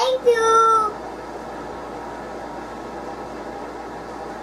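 A child's voice gives a short, high, drawn-out vocal sound in the first second, then only a steady background hiss remains.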